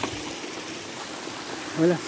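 A small, clear forest stream running over rocks: a steady rush of flowing water.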